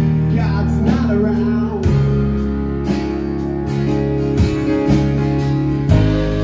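Live band playing an instrumental passage with no vocals: guitar lines over bass notes that change every second or so, with steady drum and cymbal hits.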